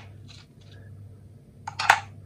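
Metal wiper parts handled on a kitchen scale: a quick cluster of sharp metallic clinks near the end.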